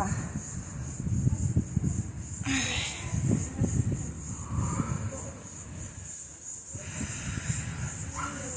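Irregular low rumble of wind and handling on a phone microphone, with a tired sigh, "ai", and a hissing exhale about two and a half seconds in, and another breathy hiss near the end.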